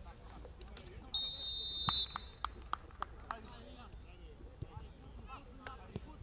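Referee's whistle: one steady, high blast about a second long, starting about a second in, signalling a dead-ball restart. A quick run of sharp clicks follows, about four a second.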